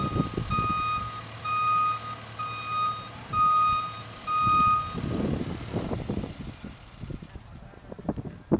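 Reversing alarm of a SkyTrak telehandler beeping about once a second over its diesel engine running, as the machine backs up carrying a shed. The beeping stops about five seconds in, followed by a few rough low noises.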